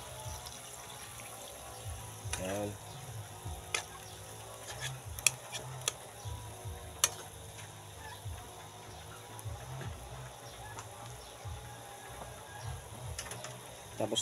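Chicken adobo sizzling and bubbling in a pan over a wood fire, a steady hiss broken by a few sharp clicks.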